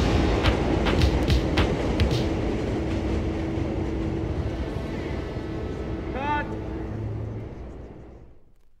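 Closing seconds of a 1983 hip-hop record: the drum hits drop out after about two seconds, leaving a rumbling noise wash that slowly fades out. A short rising-and-falling whoop comes about six seconds in.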